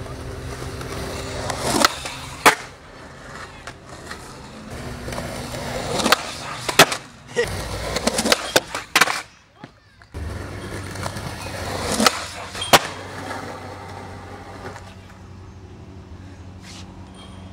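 Skateboard wheels rolling on concrete, with sharp pops and clacks of the board and trucks hitting a concrete ledge, in three clusters: about 2 seconds in, through the middle, and again near 12 seconds.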